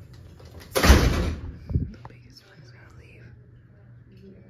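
A door closing about a second in: a loud burst lasting about half a second, then a second, smaller knock.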